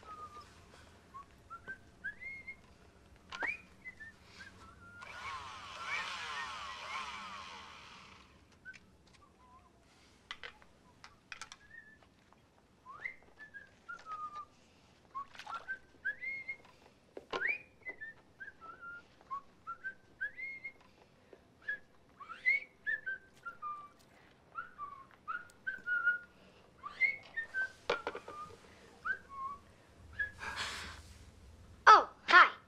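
A person whistling a wandering tune in short notes that slide up and down. There are a few seconds of hissing, whirring noise about five seconds in, and occasional sharp clicks.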